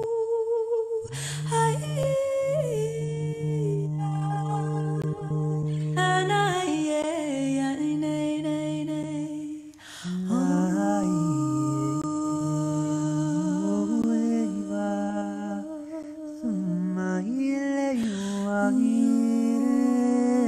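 A man and a woman improvising wordlessly with their voices, long held and gliding tones weaving freely rather than in time with each other. One voice stays low and humming-like under a higher one, and both dip briefly about halfway through.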